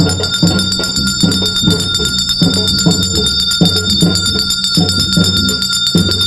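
Brass hand bell rung continuously during a puja at a village shrine, a steady high ringing, over a drum beating a regular rhythm of about two to three strokes a second.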